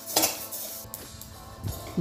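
Metal spoon scraping and stirring fennel seeds in a stainless steel kadhai as they roast, with a couple of sharper scrapes against the pan. Soft background music plays underneath.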